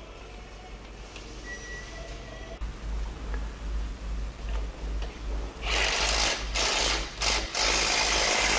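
Milwaukee cordless impact wrench hammering in several short bursts in the second half, running bolts tight on a steel 4-link frame bracket.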